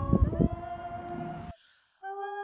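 A woman's a capella singing holds a note over rumbling noise and knocks on the phone's microphone. Everything cuts off abruptly to silence about a second and a half in.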